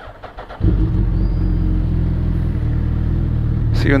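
A sport motorcycle's engine starts suddenly about half a second in and settles straight into a steady idle.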